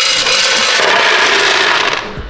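About twenty dollars in quarters poured from a claw machine's coin box into the plastic tray of a coin-counting scale: a continuous, dense rattling clatter of coins that starts at once and stops abruptly after about two seconds.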